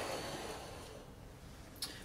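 Quiet room tone with a faint short click near the end.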